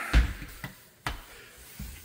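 A few short low thumps and sharp clicks, typical of footsteps and a hand-held phone being handled while walking: one thump just after the start, two clicks around the middle, another thump near the end.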